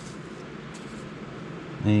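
Steady background hum of room noise, with a faint brief rustle about a second in; a man's voice starts right at the end.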